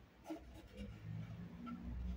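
Faint handling noise: light rubbing and a small tap about a third of a second in, over a low hum.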